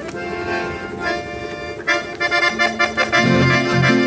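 Two piano accordions, one a Paolo Soprani, playing a chamamé tune in sustained reedy chords and melody. About three seconds in, the music gets louder as a rhythmic bass-and-chord pulse comes in.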